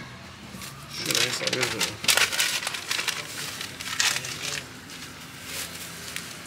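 Wrapping paper crinkling and rustling in repeated bursts as a lavash dürüm is rolled up in it by hand.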